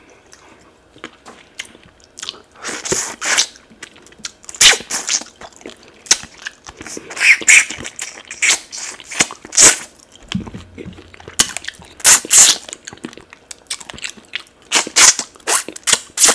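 Close-miked eating along a cooked tilapia's backbone held to the mouth: chewing, crunching and mouth sounds in irregular loud bursts with short pauses between them.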